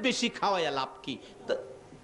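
A man preaching in a loud, wailing, sing-song voice into a microphone, the pitch gliding up and down, with a pause and one short cry about a second and a half in.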